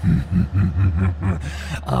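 A deep man's voice laughing in a steady run of short low pulses, about four a second.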